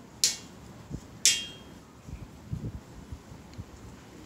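Paper-craft handling noises as a paper strip is pressed into place on paper on a hard floor: two short, crisp crackles about a second apart, then a few soft low bumps.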